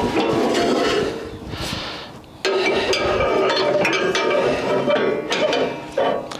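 Foundry sand muller running, its wheel churning sand in the steel drum, with scraping and clinking. The sound sags about two seconds in, then comes back abruptly.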